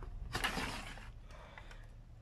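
Sliding-blade paper trimmer cutting through a paper envelope: a short scraping hiss as the blade carriage is pushed along the rail, starting about a third of a second in and lasting under a second.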